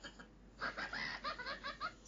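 Laughter: a quick run of short, high-pitched syllables starting about half a second in.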